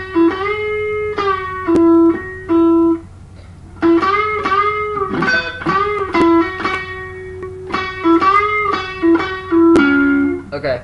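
Electric guitar played solo: a single-note country lead lick of string bends, hammer-ons and pull-offs high on the neck, in two phrases with a short pause about three seconds in.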